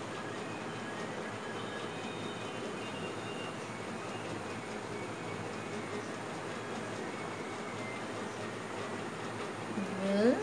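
Steady background hum and hiss, with faint thin high squeaks from a whiteboard marker writing cursive letters on a whiteboard, about one and a half seconds in and again near the end.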